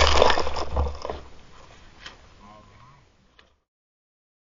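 Rushing spray of a snowboard sliding through a slushy meltwater pool, fading away over the first second or so. A faint voice a little after two seconds, then silence.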